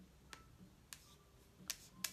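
Near silence broken by about four faint, sharp clicks from tapping on a device, two of them close together near the end.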